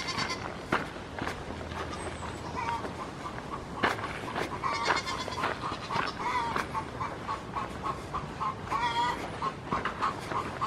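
Goats bleating over and over, a long run of short calls one after another.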